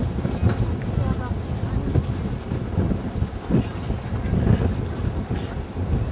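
Wind buffeting the microphone, a rumbling low noise that rises and falls with the gusts.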